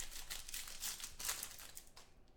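Foil wrapper of a football trading-card pack crinkling as it is torn open by hand, a run of quick crackles that drops away near the end.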